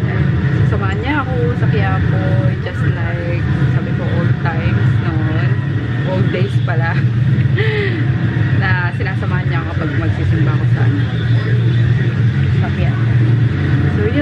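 A woman talking, over a steady low hum.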